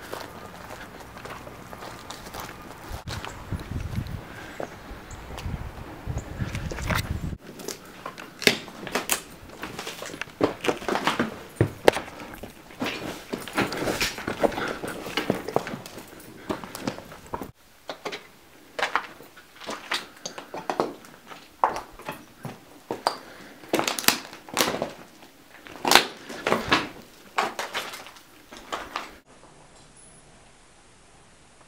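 Footsteps crunching and clattering over loose broken brick, plaster and wood debris, an irregular run of crunches and knocks. A low rumble sits under the first several seconds, and the sound breaks off abruptly and resumes about seven and seventeen seconds in.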